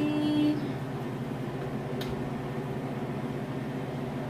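A steady low hum, with a single light knock about two seconds in as a metal baking pan is handled on a gas stovetop.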